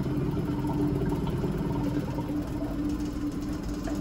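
Laboratory vacuum pump running with a steady mechanical hum as it pumps down the apparatus and the pressure falls.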